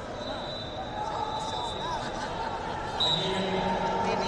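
Echoing hall din of a wrestling tournament, with coaches and spectators shouting from around the mats. About three seconds in, a short, sharp referee's whistle blast sounds as the action is stopped, and a loud sustained call sets in with it.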